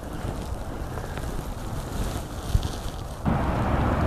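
Wind buffeting the microphone over the steady rush of a fast-flowing river, the sound shifting abruptly near the end.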